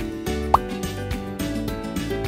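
Upbeat outro background music with steady held notes over a repeating bass. A short rising 'bloop' sound effect pops out about half a second in.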